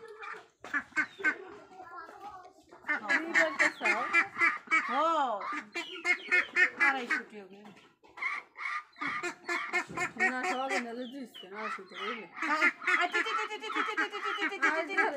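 Domestic ducks quacking at a feed bowl, in runs of quick calls with short pauses about two seconds in and about eight seconds in.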